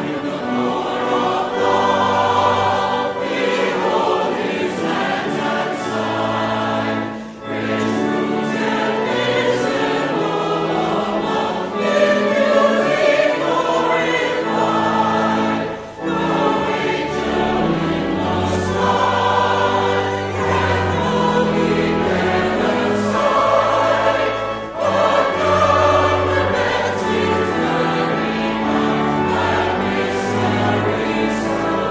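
Church choir singing an anthem in sustained phrases, with three brief breaks between phrases.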